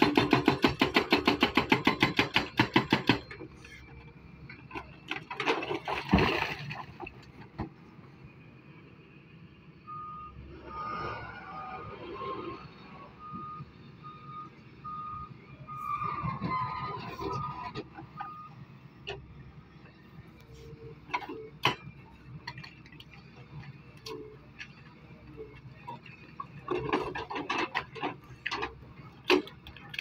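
Excavator-mounted hydraulic breaker hammering rock in a rapid, even burst for the first three seconds, then scattered knocks and rock clatter with further hammering near the end. In the middle, a warning beeper sounds in short repeated beeps for several seconds.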